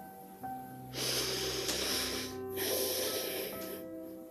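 A person breathing deeply close to the microphone: two long breaths of about a second and a half each, the first with a low rumble of breath on the mic. Soft, slow keyboard music plays underneath.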